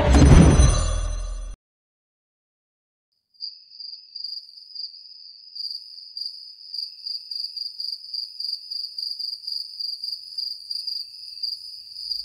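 Theme music that cuts off about a second and a half in, then a short silence, then crickets chirping: a steady high-pitched trill that pulses rhythmically to the end.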